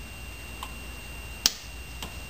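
Two short, sharp clicks, a faint one about half a second in and a loud one about a second and a half in, over a faint steady background.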